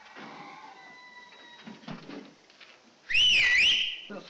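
A quiet stretch, then about three seconds in a short, loud, high whistle whose pitch dips and rises again, lasting under a second.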